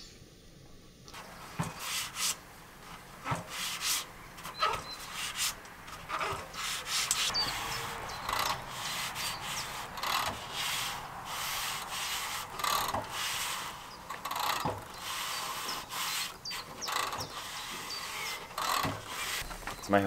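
Irregular rubbing and scraping noises with occasional clicks from hands handling a racing bicycle's wheels and frame.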